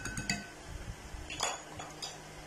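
A spoon clinks a few times against a cut-glass bowl at the very start, leaving a brief ringing tone, as the last of a powder is knocked off it. A short, softer scuff follows about a second and a half in.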